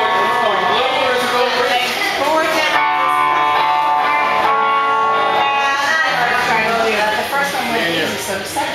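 Live band music, loud and steady, with electric guitar to the fore: sustained notes and bent, wavering lines over the rest of the band.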